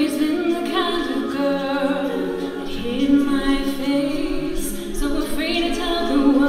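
An a cappella group of men and women singing in close harmony, with no instruments: voices hold chords that change every second or two.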